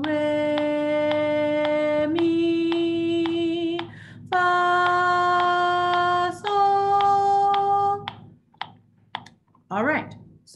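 A woman singing the solfège scale re, mi, fa, sol, each held as a whole note of about two seconds and rising a step at a time, over a metronome clicking about twice a second, four clicks to each note. The singing stops about eight seconds in, and speech begins near the end.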